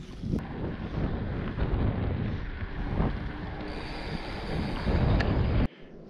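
Wind buffeting the camera's microphone: a rough, fluctuating low rumble that stops suddenly near the end.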